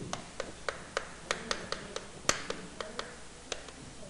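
Chalk tapping and scraping on a blackboard as characters are written: a run of short, irregular clicks, one sharper click a little past the middle.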